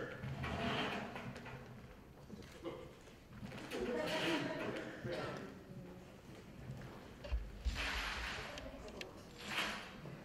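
Faint, indistinct speech, with a low thump and two short hissing sounds in the last few seconds.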